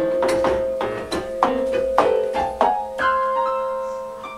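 Piano music: a run of struck notes over a long held tone, with higher notes coming in about three seconds in.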